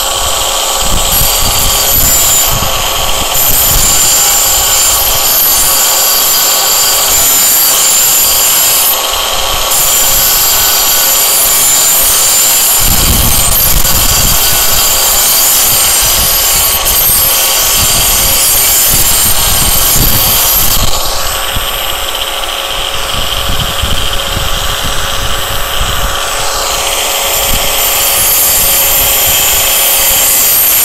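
Angle grinder fitted with a thick abrasive grinding wheel running steadily while the steel edge of a small hoe is pressed against it, grinding and sharpening the blade. The tone shifts for a few seconds about two-thirds of the way through, then settles back.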